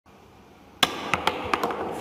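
Pool cue striking the cue ball with a sharp clack a little under a second in, followed by a quick run of about five clacks of pool balls knocking together.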